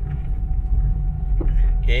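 Perodua Axia's three-cylinder engine and stainless steel extractor exhaust heard from inside the cabin, running steadily while the car is driven, the sound low-pitched.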